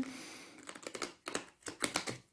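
Tarot cards being gathered up from a spread on the table: a run of light, quick clicks from the card edges, starting about half a second in.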